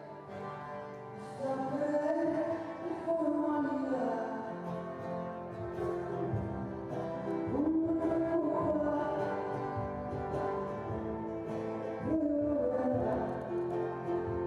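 Live concert music: a singer's voice carrying a melody over guitar and band, with a fuller low end and a beat coming in about six seconds in.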